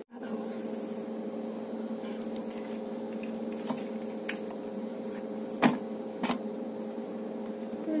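A steady low hum throughout, with a couple of sharp clicks a little over halfway through as a metal spoon scoops avocado flesh out of its skin.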